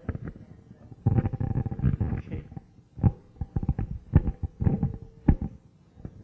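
Handling noise from a handheld microphone being moved: rubbing and bumping on the mic body, heaviest for about a second and a half near the start, then a few separate knocks later.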